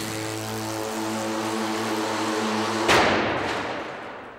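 A small motor running with a steady hum, then a sudden loud noise about three seconds in that dies away over about a second.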